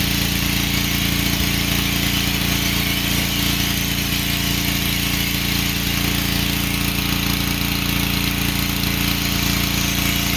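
Ryobi pressure washer running steadily with a low hum, with the hiss of its water jet spraying the truck.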